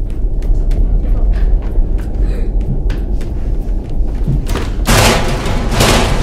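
Suspense film score: a loud, deep rumbling drone with faint ticking above it, and two loud bursts of noise about five and six seconds in.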